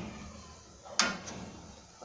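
A soft scrape at the start and a single sharp click about a second in: a kitchen utensil knocking against a steel cooking pot.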